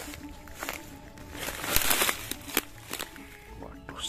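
Dry leaf litter rustling and crackling, with scattered clicks and a louder burst about two seconds in, over steady background music.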